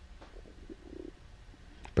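A quiet pause in speech: steady low room hum with a few faint, soft muffled sounds around the first second. A man's voice starts again right at the end.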